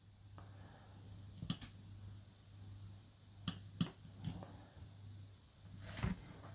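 A few sharp clicks from the small tactile push button on a Parkside 20 V battery's LED circuit board being pressed and moved, two of them close together about halfway. The button makes only intermittent contact, so the charge LEDs light only sometimes, a fault the owner puts down to dust inside the button or a break in the circuit board.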